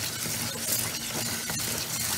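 Tap water running steadily onto raw long-grain rice in a perforated rice-steamer basket while a hand swirls and rubs the grains, rinsing the grit off; a gritty rustle of wet grains with a few sharp clicks about a second and a half in.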